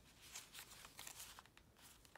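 Faint rustling of paper with a few soft ticks as the pages of a handmade paper journal are turned by hand.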